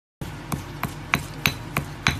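Pestle pounding chili paste in a marble mortar: five even, sharp knocks, about three a second.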